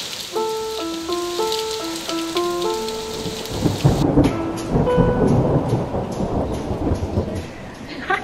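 Steady heavy rain with thunder that rumbles loudest from about halfway in. A short melody of held notes plays over the rain during the first three seconds.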